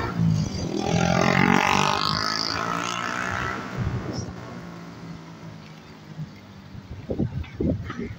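A motor vehicle passing on a city street, loudest in the first three seconds, its engine note rising about two seconds in, then fading away.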